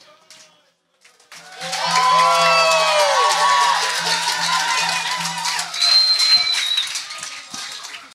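Audience applause and cheering, with whoops and a high whistle, rising suddenly about a second in after a brief hush at the end of a song, then slowly dying away.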